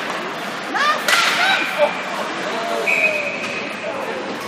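Ice hockey spectators shouting in the rink, with a sharp crack about a second in and a short blast of a referee's whistle near the end.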